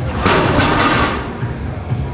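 Heavily loaded barbell with iron plates, about 715 lb, set down hard on a rubber gym floor after a deadlift: a sudden crash with the plates clanging and rattling for about a second.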